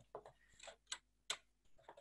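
Faint, irregular light clicks and taps of fingers handling a cardboard model car, about half a dozen in two seconds.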